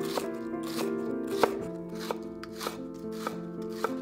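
Chef's knife slicing green onions on a wooden cutting board, an even rhythm of about three cuts a second.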